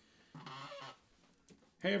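A short, low, nasal vocal sound, about half a second long, like a man's brief hum or grunt.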